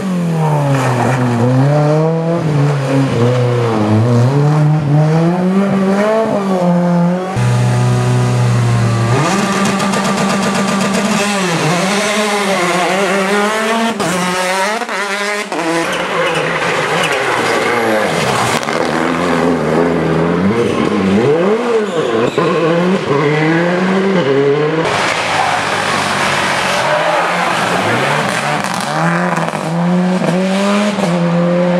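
Rally cars driven hard one after another on a stage, their engines revving up and dropping back with each gear change and corner. There is a briefly held engine note a few seconds in.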